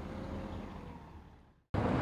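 Low, steady rumble of road traffic or a nearby vehicle engine, fading out shortly before the end and then cut off sharply.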